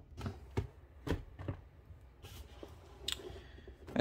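Handling noise of a camera being moved and propped up on a desk: a few scattered soft clicks and knocks over quiet room tone.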